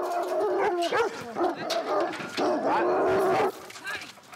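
Dog barking in several long, drawn-out, howling calls, falling quiet about three and a half seconds in.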